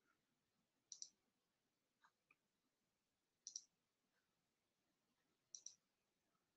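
Faint computer mouse clicks over near silence: three quick double-clicks about two seconds apart, with a couple of softer ticks between the first two.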